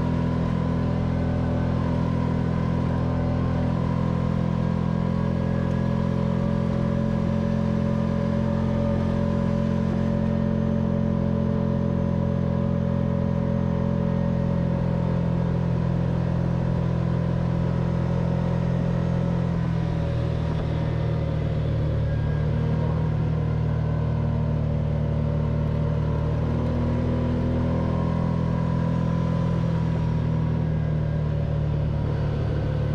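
Kawasaki Teryx4 side-by-side's V-twin engine running steadily under load while driving up a dirt trail, heard from the driver's seat. The engine note drops in pitch about two-thirds of the way through and rises a little again near the end.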